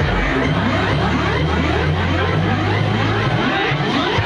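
Loud electronic dance music playing over a club sound system: a steady heavy bass under a short rising sweep that repeats about twice a second, with crowd chatter mixed in.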